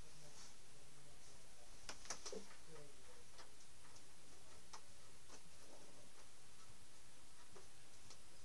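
Guitar amplifier hum with scattered sharp clicks and crackles as a faulty guitar cable is handled, the cord being blamed for the amp noise.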